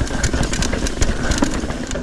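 Trek Fuel EX 7 mountain bike clattering over a rough, rocky trail at speed: a dense rumble of tyres and wind with many quick sharp knocks and rattles from the chain and frame, picked up by a bike- or rider-mounted action camera.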